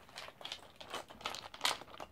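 Loose plastic Lego pieces rattling and clinking as a hand rummages through a clear plastic storage bin full of them, in quick irregular bursts.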